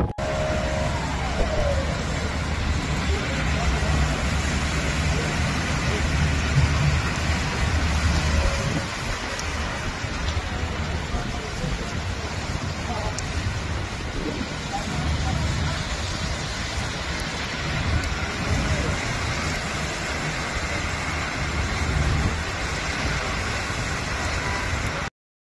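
Street traffic on rain-soaked, flooded city roads: a steady wash of car and tyre noise on wet pavement, with people's voices in the background. A deeper rumble swells for several seconds about two seconds in, and again around fifteen seconds in.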